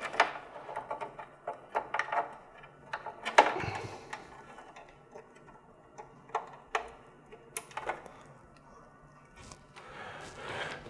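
Scattered small clicks, taps and handling noise as an Ethernet cable is worked into a port on the Ethernet switch inside a lighting-control panel. The clicks are loudest about three and a half and seven and a half seconds in, and thin out near the end.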